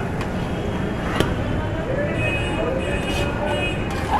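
A metal ladle stirring gravy in a wok over a running gas burner, with a sharp clank of ladle on the wok about a second in and a few lighter scrapes. Steady street noise of traffic and distant voices sits under it.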